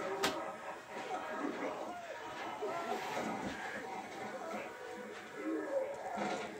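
Low voices talking, with a sharp click a moment in.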